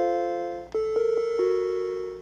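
Macintosh Quadra 650's "Chimes of Death" from its built-in speaker: an arpeggiated chord of clear tones rings out, then a second arpeggio starts just under a second in and builds note by note. The chime signals that the Mac failed its startup hardware test.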